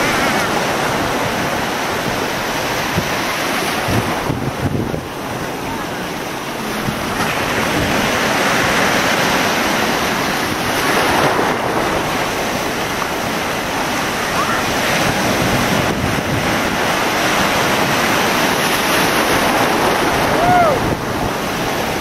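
Gulf surf breaking and washing in the shallows as a steady rushing noise, with wind buffeting the microphone.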